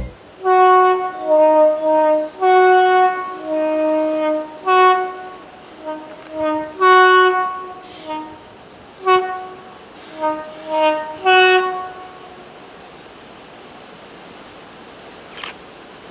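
A diesel locomotive's two-tone horn played in a long run of alternating high and low blasts, short and long, like a tune. It stops about twelve seconds in, leaving a quiet steady background.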